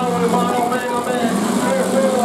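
Demolition derby cars' engines running and revving as the wrecked cars shove against each other, under a loudspeaker announcer's voice.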